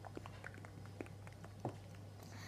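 Faint scattered clicks and small mouth noises, lip and tongue smacks close to the microphone, over a low steady hum.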